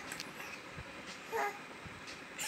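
A baby's single short, high-pitched squeal about one and a half seconds in, over faint room noise.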